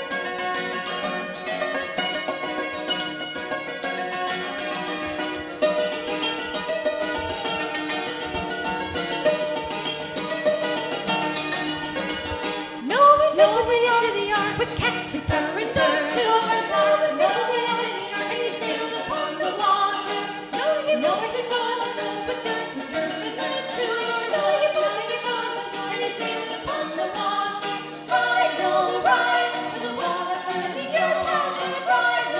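A hammered dulcimer plays a brisk, bright instrumental passage. About thirteen seconds in, voices come in singing the verse over it.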